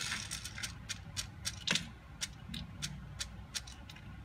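A run of light, sharp clicks and taps at an uneven pace, about fifteen in four seconds, the strongest a little under two seconds in, over a low steady room hum.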